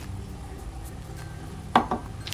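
Quiet room tone: a steady low hum with faint handling noise, and one short sharp sound near the end.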